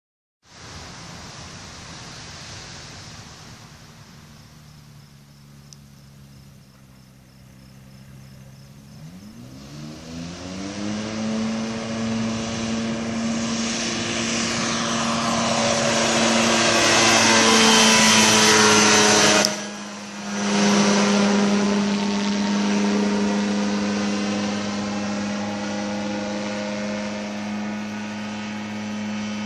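Ultralight trike's engine and pusher propeller running faintly at first, then opening up with a rising pitch about nine seconds in for the take-off run. It is loudest as the trike lifts off and passes, cuts out briefly about two-thirds of the way through, then holds a steady note that slowly fades as it climbs away.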